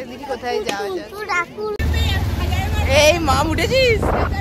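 Women's voices talking and laughing. About two seconds in, a steady low rumble of a moving motorcycle begins abruptly under the voices, with high excited laughing near the end.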